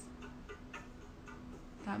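Faint regular ticking over a low steady hum.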